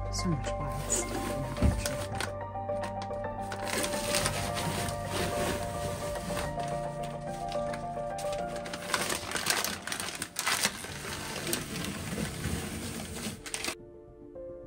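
Background music with soft sustained tones, over bursts of paper rustling and crinkling as old contact-paper shelf liner is peeled off wooden pantry shelves. The music and rustling cut off just before the end.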